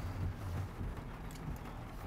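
Quiet car cabin: a faint, steady low hum with a light haze of noise, and a few faint ticks about one and a half seconds in.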